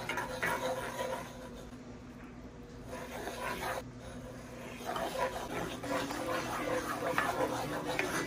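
A dog whimpering and panting softly, over a steady low hum.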